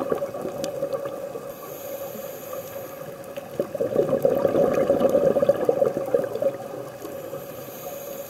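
Scuba diver's exhaled air bubbling out of a regulator, heard underwater: a gurgling, crackling rush of bubbles that swells for about three seconds from around the middle of the stretch, between quieter breaths.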